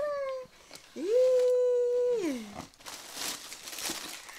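A long held voice-like call, sliding up at the start, holding steady and then sliding down, about a second in. It is followed by tissue paper rustling in an opened shoebox.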